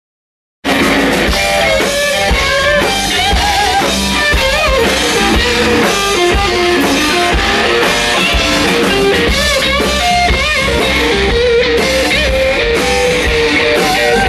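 Loud live blues-rock band: an electric guitar plays lead lines with bent notes over a drum kit. It cuts in abruptly about half a second in.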